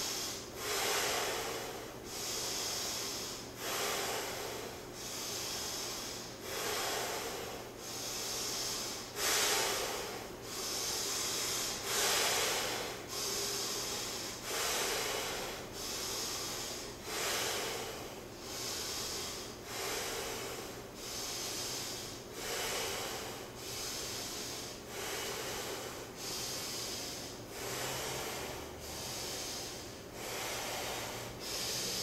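Heavy, rhythmic breathing of people holding a strenuous partner stretch, a hissing breath roughly every second, repeating evenly throughout.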